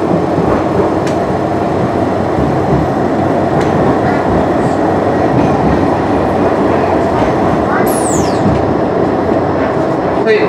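Interior running noise of a Blackpool Flexity 2 tram on street track: a steady rumble of motors and wheels on rail. A short, high, falling squeal is heard about eight seconds in.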